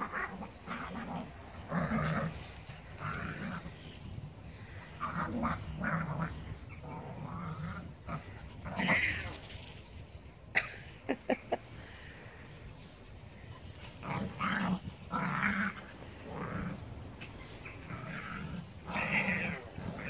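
Two small dogs play-fighting, making repeated short growls throughout, with a few sharp clicks a little past halfway.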